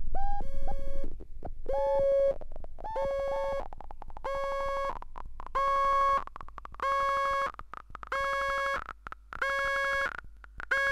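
Handmade patch-cable synthesizer playing a repeating buzzy beep about once a second, the first few notes sweeping upward in pitch as they begin, then settling into evenly spaced steady notes. Scattered clicks and crackles sound as the banana-plug patch cables are moved.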